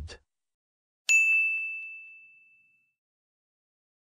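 A single bright chime sound effect about a second in, one clear high tone that rings and fades away over about a second and a half.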